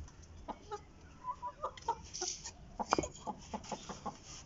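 White roosters in a wire-mesh coop clucking in a few short notes, with scattered clicks and rustles; the sharpest click comes about three seconds in.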